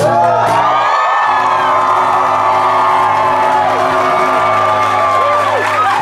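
Strummed acoustic guitar chords ringing out while a club crowd cheers and whoops over them.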